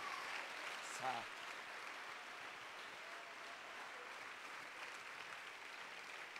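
Faint applause from the congregation slowly dying away, with a short call from one voice about a second in.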